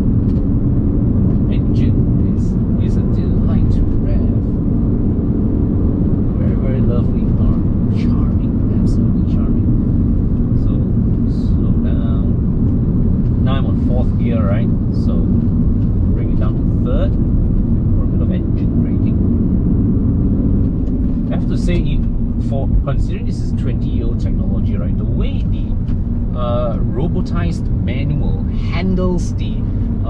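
Alfa Romeo 156 heard from inside its cabin while being driven: a steady low drone of engine and road noise, running smoothly.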